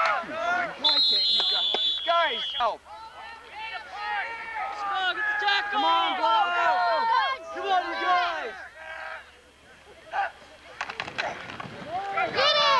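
A referee's whistle blows once, a steady shrill tone lasting about two seconds starting about a second in, signalling the end of the play after the ball carrier is brought down. Shouting voices from the sideline and crowd run throughout.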